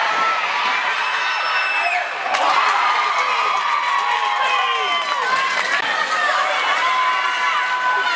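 Ice-rink crowd cheering and screaming in many high-pitched voices. A sharp knock about two seconds in is followed by the cheering growing louder.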